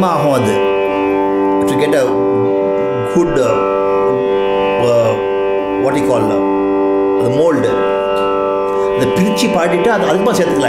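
A male voice singing short Carnatic phrases with sliding, ornamented pitch (gamakas) over a steady tanpura drone.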